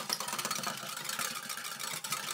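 Hand wire whisk beating runny egg batter in a glass bowl, its wires clicking against the glass in a fast, steady rhythm.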